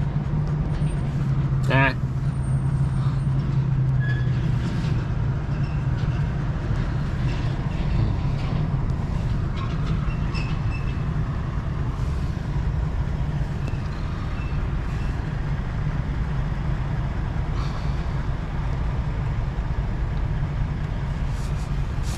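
RV engine idling, heard inside the cab as a steady low rumble, with a low hum that fades after the first few seconds.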